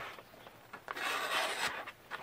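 Freshly sharpened chisel slicing through a sheet of paper, with the paper rustling: a dry rasping cut of about a second and a half, starting about half a second in.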